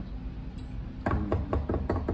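Hands drumming a mock drum roll on a hard surface, sounding like knocking: a quick, uneven run of knocks starting about a second in.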